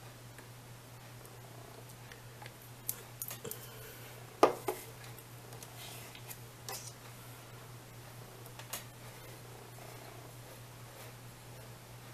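A few light clicks and taps from handling nail tools at a cup of water on a tabletop, the sharpest about four and a half seconds in, over a steady low hum.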